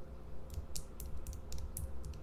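A run of irregular, quick, sharp clicks and taps, like typing, starting about half a second in.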